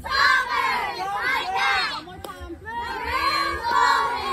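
A squad of young girl cheerleaders chanting a cheer in unison, in short rhythmic shouted phrases with brief breaks between them.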